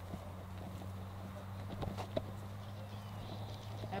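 Footsteps of people walking along a grassy dirt trail: scattered soft thuds and rustles at an uneven pace, over a steady low hum.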